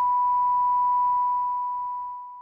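Broadcast line-up tone: a single steady electronic beep held at one pitch, fading slightly toward the end.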